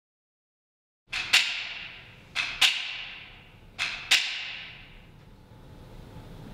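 Three sharp double strikes of a ringing percussion sound, spaced about a second and a half apart, starting about a second in; the second hit of each pair is the louder, and each pair rings away over about a second.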